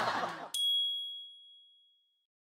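Studio voices and laughter cut off about half a second in. A single bright electronic chime of a channel logo sting follows, ringing and fading out over about a second and a half.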